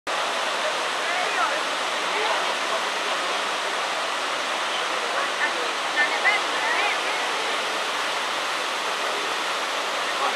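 Steady rush of a waterfall pouring into a rock pool, with faint distant voices now and then.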